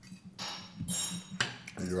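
Knife and fork scraping and clinking on a ceramic plate while a steak is cut, in two short strokes about half a second apart. The second stroke rings briefly.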